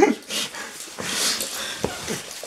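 A Russian Toy Terrier making short breathy sounds, with a single sharp click near the end.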